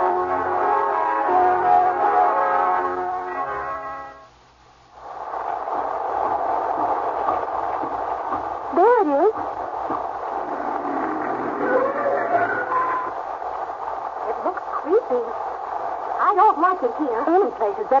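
A radio-drama music bridge of held, layered notes ends about four seconds in. After a short gap, a steady rain-storm sound effect follows, with a few brief wavering vocal sounds over it and speech beginning at the very end.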